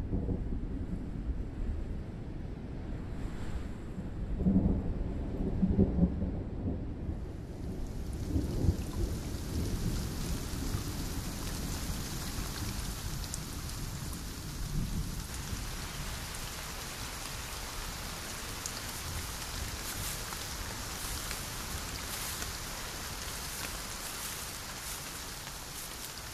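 Thunderstorm sound effect: low thunder rumbling through the first several seconds, with its loudest swells about five seconds in, then rain setting in about seven seconds in and growing heavier about halfway through.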